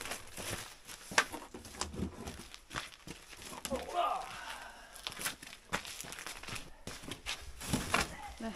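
Plastic sheeting crinkling and rustling, with scattered sharp clicks and knocks, as frozen chickens are lifted out of a plastic-lined crock.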